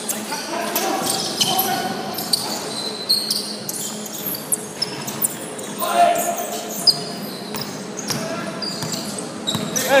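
Basketball game play on a wooden court in a large hall: a ball bouncing in short sharp strikes, sneakers squeaking now and then, and players calling out in the background.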